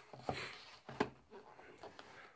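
Cardboard packaging handled by hand: a brief rustle, then a single sharp tap about a second in.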